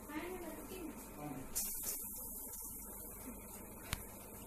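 Faint voices in the background, then a soft steady hiss that sets in about a second and a half in, with a single sharp click just before the end.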